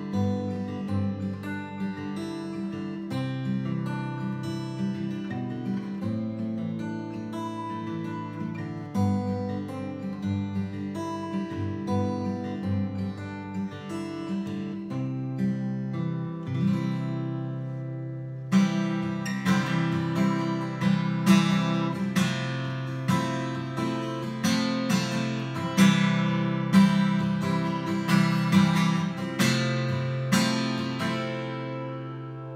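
Seagull S6+ acoustic guitar, solid spruce top with cherrywood back and sides, played with the bare fingers: picked notes and chords at first, then from about two-thirds through, harder strummed chords that ring out louder and brighter.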